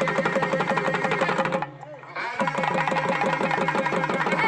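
Festival drumming: a large hand-held frame drum and a barrel drum beating a fast rhythm under a steady held tone, with a man's voice over a microphone. The music breaks off briefly about halfway and then starts again.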